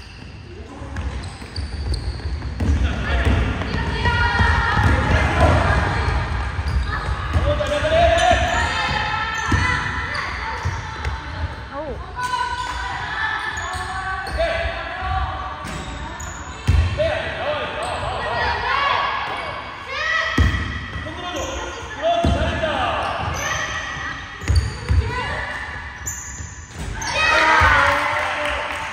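A basketball bouncing and thudding on a hardwood gym floor during play, with a few sharper thuds standing out. Players' shouts and calls echo through the large hall.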